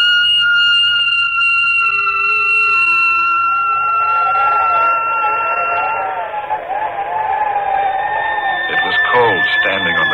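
Dramatic radio-drama music cue: a held high note comes in suddenly and sustains for about six seconds. A wavering, vibrato-like melody line takes over lower down partway through, and near the end it gives way to voice-like sounds.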